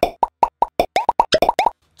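A rapid string of about fifteen short cartoon-style pop sound effects, each a quick upward-flicking plop, for under two seconds, then stopping.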